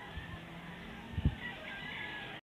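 Quiet outdoor background with a faint steady low hum and a single short, low thump just past a second in.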